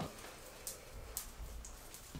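Quiet room tone with a few faint, sparse light clicks.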